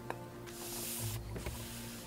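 A wide flat hake brush swept once across a painted panel, a soft swishing hiss lasting under a second about halfway in, after a light click near the start. Quiet background music runs underneath.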